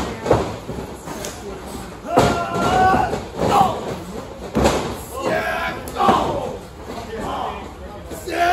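Several dull thuds and slams of wrestlers' bodies hitting the wrestling ring's mat and ropes, the deepest about four and a half seconds in, amid men's shouts and grunts.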